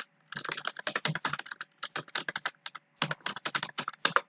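A computer keyboard being typed on fast. One click comes at the very start, then rapid keystrokes follow in three runs with short pauses between them.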